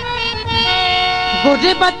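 Instrumental break in a Punjabi folk song: steady held notes from the accompaniment over low drumming, with a short rising run of notes near the end as the singing is about to return.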